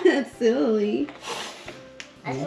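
A child's voice in a wordless, wavering exclamation during the first second, then a brief hissy rustle.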